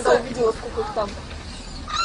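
A person's short, repeated startled cries of "ай!", which fade after about a second.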